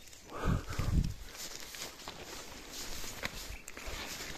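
Footsteps in long grass, with two heavier thuds about half a second and a second in, then light rustling of grass and twigs being parted by hand.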